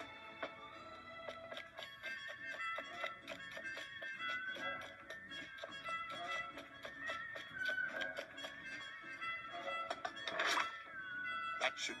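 Orchestral film score with violin, heard from a TV, playing a busy run of short, quick notes over held tones. A loud, brief noisy sound effect cuts in about ten and a half seconds in.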